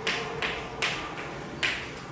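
Chalk tapping and scraping on a blackboard as words are written: a few short, sharp strokes about every half second.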